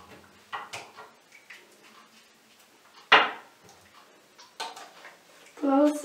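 Plastic bottles and caps being set down and handled on a bathroom counter: a few light clicks and knocks, with one louder knock about three seconds in, as the spray-bottle top is put back on.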